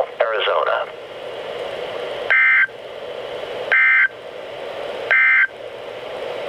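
Emergency Alert System End-of-Message data bursts from NOAA Weather Radio, played through a weather alert radio's speaker: three short, loud, buzzy two-tone digital squawks about a second and a half apart, with radio hiss between them, marking the end of the severe thunderstorm warning broadcast.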